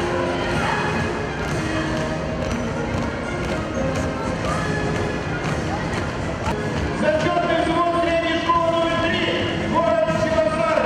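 Marching feet of a column of cadets stamping on a sports-hall floor, with music playing in the hall; the music grows louder about seven seconds in.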